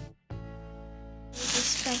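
Background music with steady sustained tones, cutting out for a moment right at the start. About one and a half seconds in, a loud rustling crinkle of plastic packaging being handled comes in over it.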